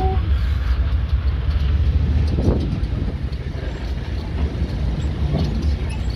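Steady low rumble of an open-sided tour vehicle in motion, with wind noise on the microphone.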